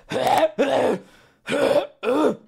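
A man clearing his throat three times in quick voiced bursts.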